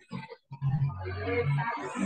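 A person's drawn-out, wordless voice, cut off briefly near the start, carried over a video call.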